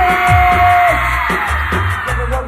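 Live cumbia villera band music: a high note held for about a second near the start, over a heavy, steady bass beat.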